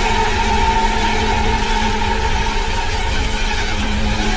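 A loud, steady soundtrack drone: an even hiss with a few held tones sitting underneath.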